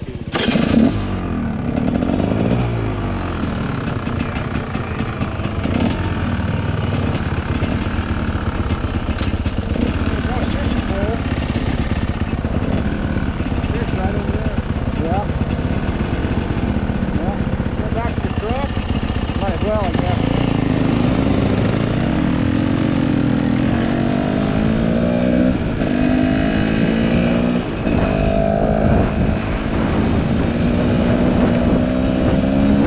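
Dirt bike engines running at idle, with a sharp loud burst about half a second in. From about two-thirds of the way through, a bike revs and pulls away, its engine pitch rising and falling repeatedly as it accelerates.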